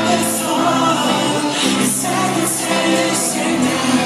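Live band music with singing, from a pop-rock concert.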